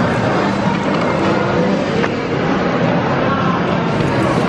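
Background music, with aluminium foil crinkling as a wrapped burger is peeled open by hand.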